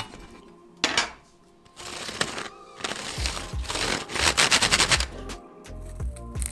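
A wooden drawing pencil being turned in a small metal hand sharpener, with rapid scraping strokes that are loudest about four to five seconds in. Before that come a couple of sharp clicks. Background music with a bass beat comes in about three seconds in.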